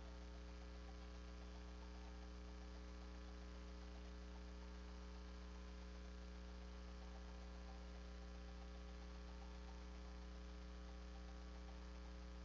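Faint, steady electrical mains hum with a ladder of overtones, unchanging throughout, with no speech or other sound above it.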